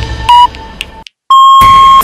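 Electronic beeps: a short beep, then after a moment of silence a longer steady beep that cuts off suddenly.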